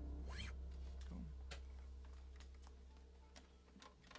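The last low note of a song on electric bass and acoustic guitar ringing out and fading away, with a short rising squeak of a finger sliding on a guitar string about half a second in and a few light clicks of instrument handling.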